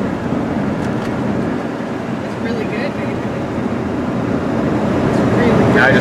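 Steady road and engine noise inside a moving RV's cabin, with a faint voice briefly about two and a half seconds in.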